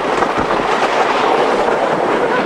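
Wooden roller coaster train running along its track: a dense, steady rattle of wheels on the rails.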